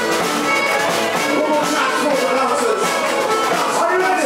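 Live band playing a song with drums and guitars, loud and continuous, with a melody line sliding up and down over it.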